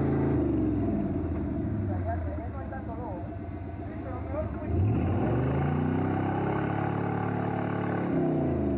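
Jeep's engine revving hard as it churns through deep mud: the revs drop about a second in, run lower for a few seconds, then climb again about five seconds in and hold high.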